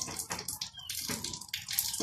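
Fresh leafy herb sprigs being stripped and snapped by hand, a crisp, irregular rustling and crackling.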